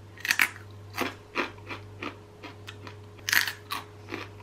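Biting and chewing an air-fried pasta crisp, slightly overcooked: a string of short, sharp crunches, heaviest just after the start and again about three seconds in.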